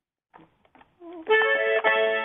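Mini accordion: a few faint clicks of handling, then, a little over a second in, a held chord starts and sustains steadily.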